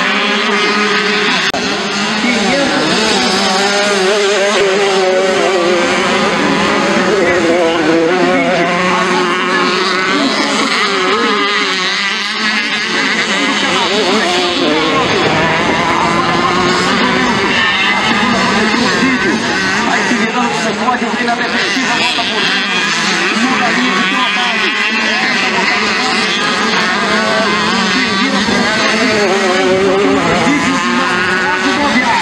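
Several small two-stroke motocross bikes racing, their engines revving up and down continuously as the riders accelerate and shift around the dirt track.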